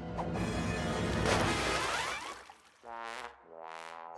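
Cartoon crash and splash sound effect lasting about two seconds, then two short rising musical tones near the end. It is the sound of the sandwich being dropped and landing wet.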